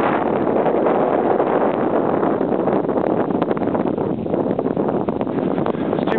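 Wind buffeting the camera microphone, a loud, rough rumbling noise with constant crackling gusts.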